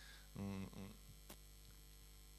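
Steady low electrical mains hum running under a pause in the speech, with a short voiced hum from a man about half a second in and one faint click later.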